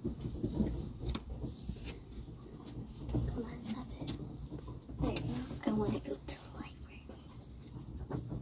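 Hushed, whispered speech with soft knocks and shuffling as a person climbs carpeted steps, over a low steady hum.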